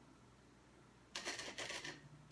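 Near silence, then about a second in a short, rattling scrape as a glass is handled on the table, lasting under a second.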